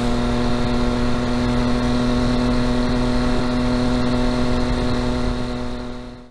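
Motorcycle engine running at a steady cruising speed, holding one even pitch, heard from the rider's position. The sound fades out near the end.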